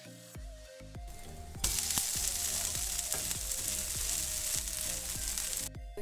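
Jowar dosa sizzling on a hot dosa pan, the sizzle coming in loud about one and a half seconds in and cutting off just before the end, over background music with a steady beat.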